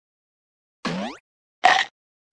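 Two short cartoon-like sound effects: a quick pitched sound sliding upward, then a brief blip about half a second later.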